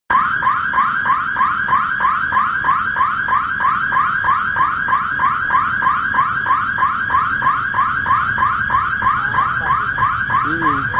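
Electronic railway level-crossing warning alarm sounding a rapid, evenly repeating rising chirp, about four a second, warning of a train on its approach.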